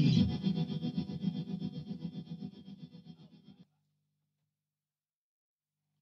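Electric guitar chord held by an MXR reverb pedal's infinite-sustain setting, a steady reverb pad that fades away over about three and a half seconds and then cuts off abruptly.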